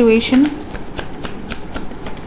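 A tarot deck being shuffled by hand: a quick, irregular run of card slaps and flicks, several a second, starting about half a second in.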